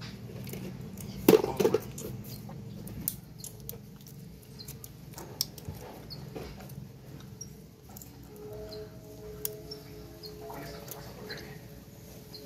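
Faint small metallic clicks and scrapes as a folded bottle cap is handled and slid along a steel knife blade, with one brief louder sound about a second and a half in.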